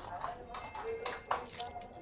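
A crisp papadam, a thin fried chickpea-flour wafer, crunching in the mouth as it is chewed, with a few short crunches.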